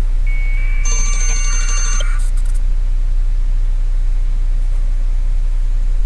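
A burst of modem-like data tones, about two seconds long, from the balloon payload's radio transmitter heard over a ham radio receiver: one steady tone, then a chord of beeping tones over it, ending in a few clicks. A steady low hum runs underneath.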